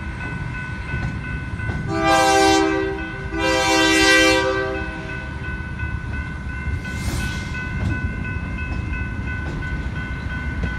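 Freight train passing a grade crossing. Its multi-tone air horn sounds two loud blasts about two and four seconds in, the second longer, and a fainter one near seven seconds. Between them are a steady high ringing from the crossing signal bell and the constant low rumble of the rolling cars.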